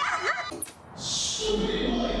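High, gliding whimpering cries, cut by a sharp crack about half a second in, followed by a noisy hiss.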